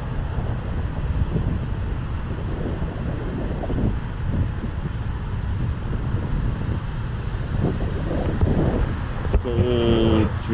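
Wind buffeting the microphone of a camera carried on a moving Segway: a steady low rumble with no clear tone.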